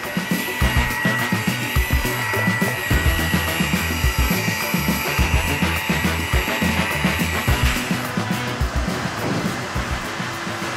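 Rotary car polisher with a foam pad running steadily on a car door panel, a high motor whine, working polishing compound into the paint to polish out damage; the whine stops about eight seconds in. Background music with a steady beat plays throughout.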